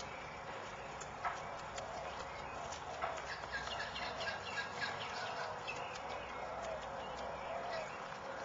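Outdoor ambience: a steady background hiss with birds calling in short chirps, thickest from about three to five seconds in, and a couple of sharp clicks, about one and three seconds in.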